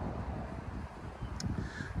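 Wind buffeting the microphone as a low, uneven rumble, with a single faint click about one and a half seconds in.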